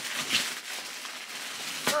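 Plastic packaging bags crinkling and rustling as rolls of tulle are handled, a crackly, uneven noise that runs on until a short 'ugh' at the end.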